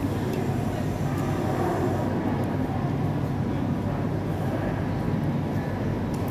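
Food-court ambience: a steady low hum under a background murmur of voices, with a few faint clinks of tableware.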